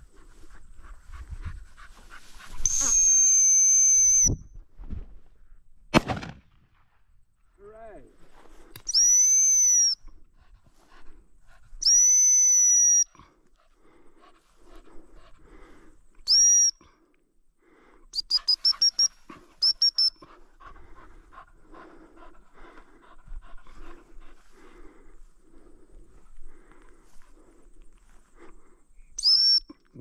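A shrill gundog training whistle used to handle a working cocker spaniel. It gives three long blasts in the first half, then short pips, including a rapid run of about eight pips around the two-thirds mark. There is a single sharp click about six seconds in.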